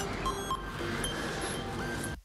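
Television news opening theme music: a dense electronic jingle, with two short blips about half a second in.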